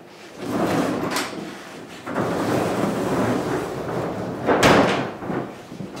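Wooden pocket door pulled out of the wall and slid shut, rumbling along in two pulls, then knocking against the jamb about four and a half seconds in.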